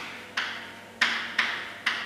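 Chalk tapping and knocking against a blackboard while writing: four sharp taps about half a second apart, each dying away quickly.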